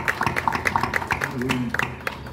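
Applause from a small group, individual hand claps coming several times a second, with a brief voice partway through.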